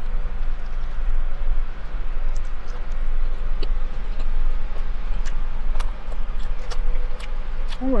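Chewing and small mouth clicks from someone eating a breaded chicken sandwich, over a steady low hum inside a car.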